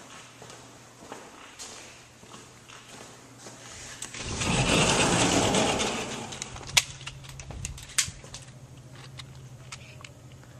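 A sliding glass door rolling open with a rumbling rush that lasts about two seconds, followed by two sharp clicks and a steady low hum.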